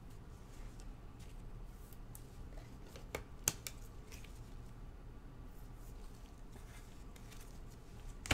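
Quiet handling of trading cards with gloved hands: a couple of light clicks about three seconds in as a card is moved and set down, over a low steady hum.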